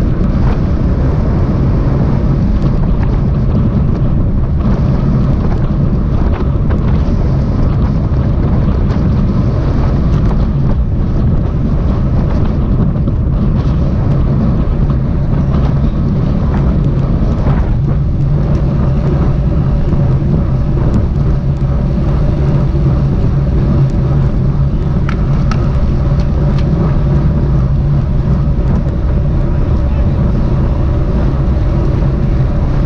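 Loud, steady wind rush on the microphone of a camera mounted on a road bike riding at speed in a race pack, with a constant low rumble underneath.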